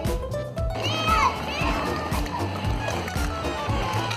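Background music with a steady beat, with a child's voice calling out briefly about a second in.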